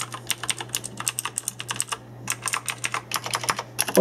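Typing on a Razer BlackWidow Ultimate 2014 mechanical keyboard, its Razer Green clicky switches clicking in quick runs, with a brief pause about two seconds in.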